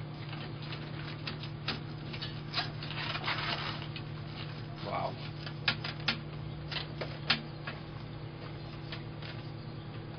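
Brass instrument bell being worked over a dent-roller mandrel: irregular sharp clicks and short scraping rubs of the thin brass against the roller as the dents are pressed out, over a steady low hum.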